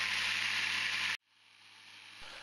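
3D-printed supercharger spinning on its belt-driven test rig near 27,000 RPM: a steady rushing hiss over a low hum, with its bearings really not happy. The sound cuts off abruptly about a second in, leaving only a faint sound that slowly grows.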